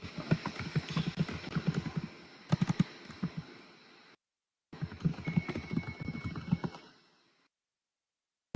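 Rapid, irregular clicking of computer keyboard typing picked up by an open microphone on a video call, with the audio cutting out completely twice. A faint steady high tone sounds for about a second and a half midway.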